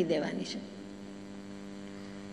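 Steady electrical mains hum, a low buzz with evenly spaced overtones, left audible once a woman's voice trails off in the first half-second.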